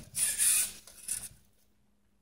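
Handling noise: two short bouts of crisp rustling and rubbing in the first second and a half, as small metal parts are moved about by hand.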